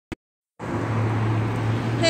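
A short click, then about half a second of silence, then steady outdoor background noise with a low hum.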